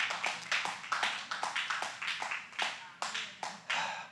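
Congregation clapping irregularly, several separate claps a second, with some voices reacting underneath.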